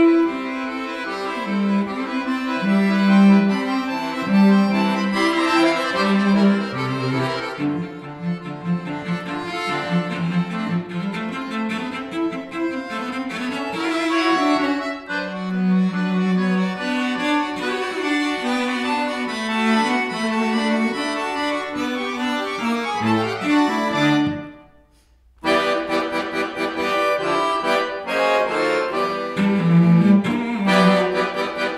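Cello and accordion playing a duet together, the bowed cello notes moving over sustained accordion chords. About five seconds before the end both stop at once for about a second, then resume.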